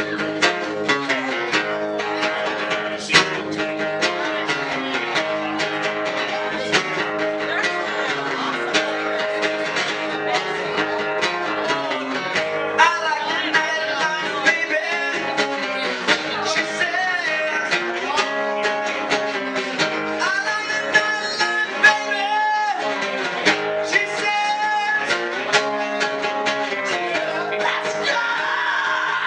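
Acoustic guitar strummed in a steady rock rhythm.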